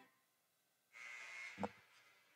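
About a second of dead silence, then the faint steady hiss of a live broadcast microphone coming in, with one brief, faint voice-like sound a little past halfway.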